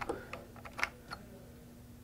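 Three light clicks of metal parts as the receiver end cap of a Czech vz. 26 submachine gun is turned off its interrupted thread and lifted from the receiver tube. The loudest click comes just under a second in.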